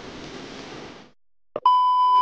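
A steady background hiss fades out about a second in. Then, near the end, a loud, steady, high test-tone beep starts: the TV colour-bar 'no signal' tone used as an editing transition.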